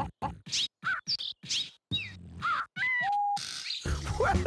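Cartoon birds making a beatboxing bird routine: a quick run of short chirps, clicks and sweeping whistles, some rising and some falling. Near the end comes a whistle that drops and holds for a moment, then a short hiss.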